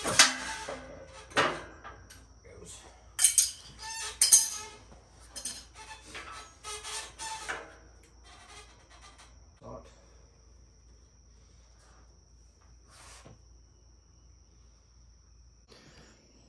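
Metal hand tools clinking and knocking against a zero-turn mower's engine and deck during maintenance work, a string of sharp clicks through the first half, then only faint, scattered sounds.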